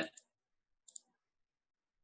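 Two faint computer mouse clicks in quick succession about a second in, a double-click; otherwise near silence.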